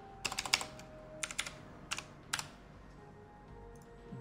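Typing on a computer keyboard: a quick run of keystrokes, a few more about a second later, then two single key presses.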